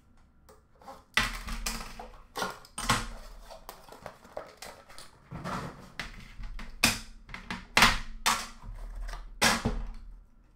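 Upper Deck The Cup hockey card metal tin being opened by hand: a quick run of sharp scrapes, clicks and clatters as the seal is worked off and the metal lid is pried loose, with dull knocks against the glass counter. The loudest clatters come near the end.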